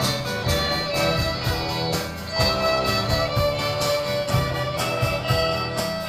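Live rock music from a string-led student ensemble: violins and cello over acoustic guitar, with a steady drum-kit beat.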